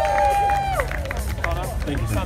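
Audience voices whooping and calling out after the band is introduced: one long high whoop that drops away about a second in, then short scattered shouts, over a low steady hum.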